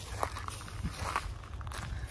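Footsteps on dry, leaf-littered grass, a few soft crunches, over a steady low rumble.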